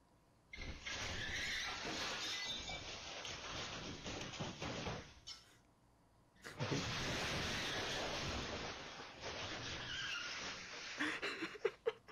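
Glass and debris shattering and crunching as a pickup truck moves through a store's smashed storefront. It comes in two long, noisy stretches of four to five seconds each, with a short pause between them.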